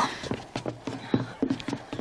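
Horse hooves clip-clopping, a few irregular knocks a second.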